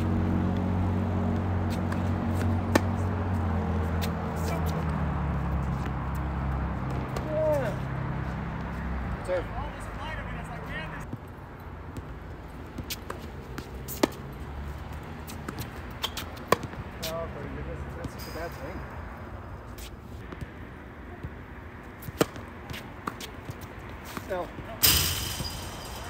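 Tennis balls struck by racket strings: a handful of single sharp hits a few seconds apart during rallies, with short squeaks of court shoes. Through the first ten seconds a low drone runs underneath, sinking slowly in pitch.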